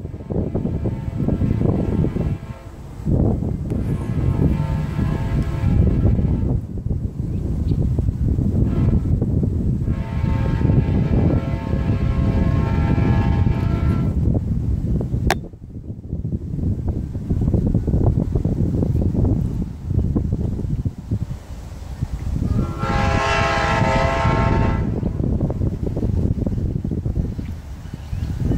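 Horn of an Amtrak GE P42DC diesel locomotive sounding a series of long blasts as the train approaches, with a brief faint one between them; the last blast, near the end, is the loudest. A steady low rumble runs underneath.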